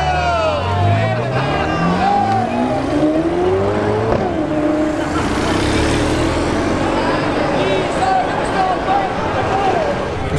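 Ferrari California convertible's engine accelerating hard: the engine note climbs steadily for about three seconds, then drops at an upshift about four seconds in and carries on at a lower pitch. Spectator voices are heard alongside.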